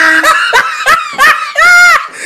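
A woman's shrill, high-pitched cackling laugh, the kuntilanak ghost's laugh: a string of short rising-and-falling bursts, then one longer held note near the end.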